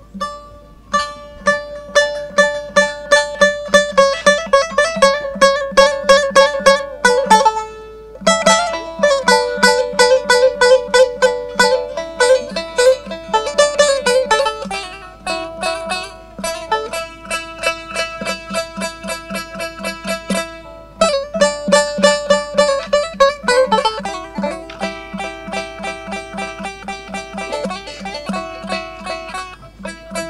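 Turkish long-necked lutes, cura and bağlama, played together in a fast instrumental with rapid plucked notes. The playing thins briefly about eight seconds in and dips again around twenty-one seconds before going on.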